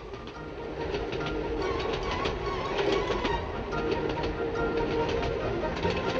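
Train running at speed on the rails: a steady rumble with scattered sharp clicks of the wheels over rail joints.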